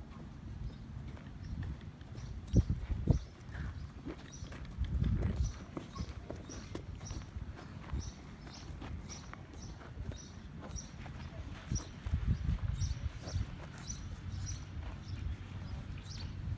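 Horse's hooves clip-clopping on a paved walkway as it is led at a walk, with two sharp knocks about two and a half and three seconds in. A faint high chirp repeats about twice a second through most of it.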